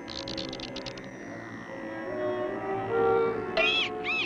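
Cartoon background music with held notes. A quick rattle of clicks sounds in the first second, and high squeaky rise-and-fall sound effects come near the end.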